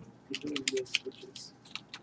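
Typing on a computer keyboard: a quick, uneven run of key clicks, several a second.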